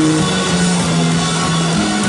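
Live rock band playing: electric guitar, bass guitar and drum kit, the bass line moving through held notes that step up and down.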